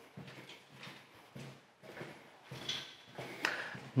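Footsteps walking along a hard corridor floor, with light knocks and a rattle from an aluminium step ladder being carried.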